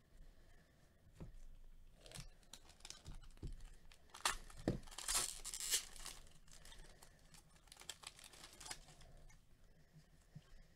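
Foil wrapper of a Bowman Chrome baseball card pack being torn open and crinkled, in irregular crackles that are densest about halfway through. A few soft knocks from handling come between them.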